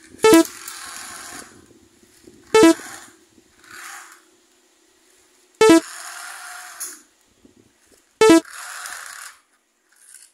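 Electronic toy train sound effect: a short horn toot followed by about a second of hiss, played four times a few seconds apart.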